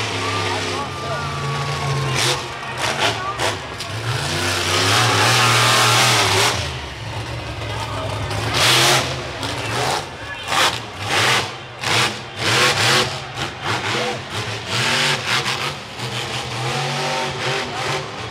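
Monster truck engine revving hard during a freestyle run. It is loudest for a couple of seconds about four seconds in, then comes in a string of short, sharp bursts, with crowd voices and yelling over it.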